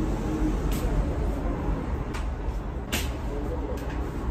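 A steady low rumble, with a few short knocks as objects are set down and handled, about a second apart near the middle.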